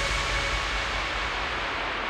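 Hardstyle track in a beatless transition: a sustained synth chord dies away in the first half second, leaving a white-noise sweep whose top end is gradually filtered down, over a low bass rumble.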